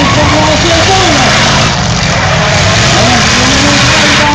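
Demolition derby cars' engines revving hard, with wavering pitch, as wheels spin and the cars shove against each other. A loud crowd of shouting voices runs underneath.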